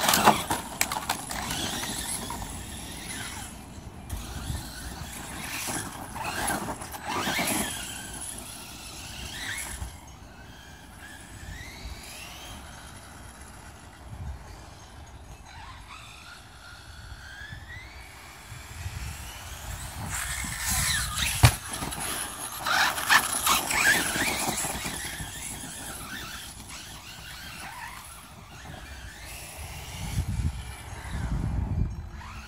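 Brushless electric motor of a Redcat Avalanche XTE RC monster truck on a 4S battery, whining up and down in pitch with the throttle as it drives, mixed with tyre and chassis clatter. It is loudest near the start, around seven seconds and in a stretch about two-thirds through that holds one sharp click.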